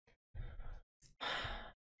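A person breathing audibly into a close microphone: two breaths of about half a second each, heard as a sigh, with a small sharp click between them.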